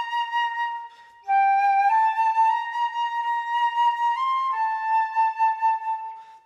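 Concert flute playing a slow, calm melody in long held notes, with a short breath break about a second in before the next phrase.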